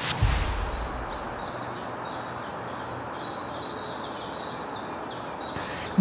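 Small birds chirping in a long run of short, high notes, about three a second, over a steady outdoor hiss. A brief low whoosh comes right at the start.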